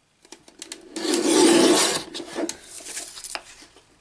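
Paper trimmer cutting through cardstock. A few light clicks come first, then a rasping slide of about a second as the blade runs down the rail. Paper rustling and small knocks follow as the cut piece is shifted.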